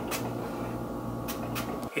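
A steady low hum with a few faint short clicks.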